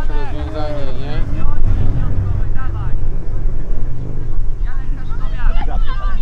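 Wind buffeting the microphone: a loud, uneven low rumble. Voices call out in the first second and again near the end.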